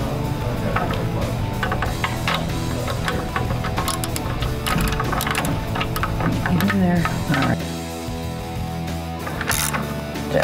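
Background rock music with guitar, over the clicking of a hand ratchet and short metal clinks as the bolts of a tubular upper control arm are tightened.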